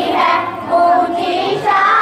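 A naat, an Islamic devotional song, sung by a high voice that holds and bends long notes.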